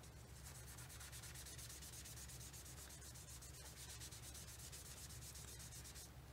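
Wedge of foam stamping sponge rubbed quickly over cardstock in faint, even strokes, blending ink onto the paper.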